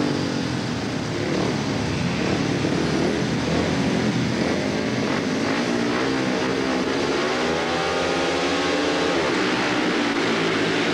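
Several 500cc single-cylinder speedway motorcycle engines revving up before the start of a race, their pitch rising and falling again and again.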